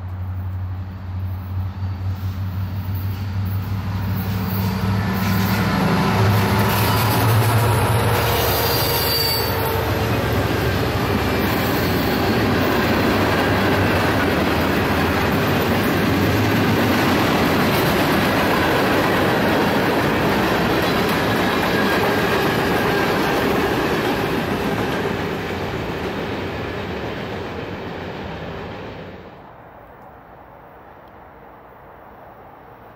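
A diesel-hauled freight train passes close by. The locomotives' engine drone comes first, then the cars roll past on the rails with a long, loud rumble and a brief high wheel squeal about nine seconds in. The sound drops away abruptly near the end.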